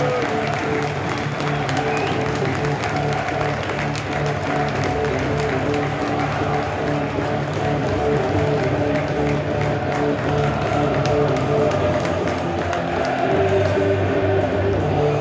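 Music played over a football stadium's PA system, with the crowd applauding and cheering as the teams walk out onto the pitch.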